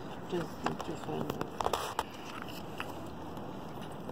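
Low, indistinct talk with a few sharp crinkling clicks of plastic packaging about one to two seconds in.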